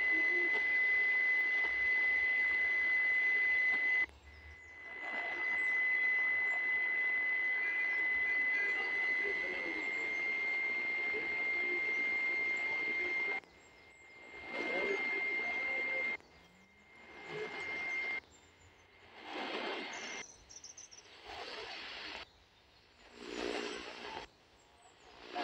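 Sihuadon R-108 portable radio receiving static hiss with a steady high whistle over it, briefly cutting out about four seconds in. From a little past halfway the radio is tuned: short bursts of static alternate with gaps where it mutes.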